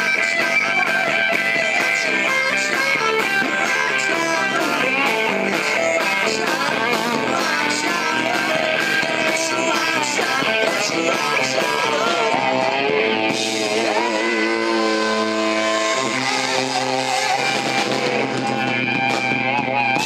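Live rock band with electric guitars, bass and drums playing a song's ending. The drums stop about two-thirds of the way through, leaving the guitars holding long ringing chords to the finish.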